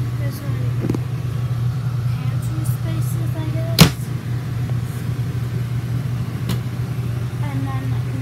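A steady low mechanical hum throughout, with one sharp click a little under four seconds in.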